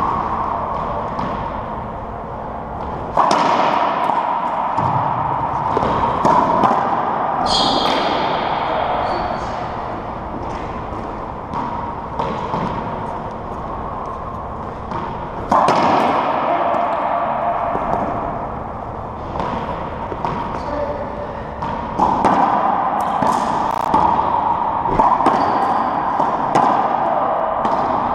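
Racquetball rally in an enclosed court: repeated sharp smacks of the ball off racquet strings, walls and the hardwood floor, each ringing in the hard-walled room. There is a brief high squeak about eight seconds in.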